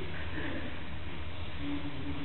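Steady low hum of a large hall with faint, distant voices.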